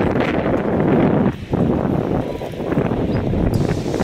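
Loud wind buffeting a phone's microphone: a rough rumbling noise that dips briefly about a second and a half in.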